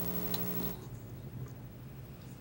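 Electrical buzz in the room's sound system, a steady pitched hum that cuts off suddenly under a second in. Afterwards only a faint low hum and room tone remain, with a light click.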